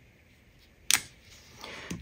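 A single sharp click about a second in as a clear acrylic stamp block is set down on the work surface, followed by a soft rustle of the cardstock panel being handled.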